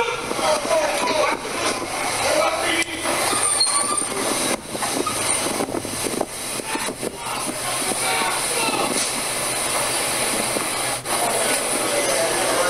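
Subway train at a station platform, its rail noise and wheel squeal steady and loud, with people's voices mixed in and a brief high squeal about four seconds in.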